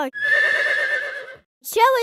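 A horse whinnying once for about a second and a half, its pitch trembling throughout, used as a sound effect; a voice starts speaking near the end.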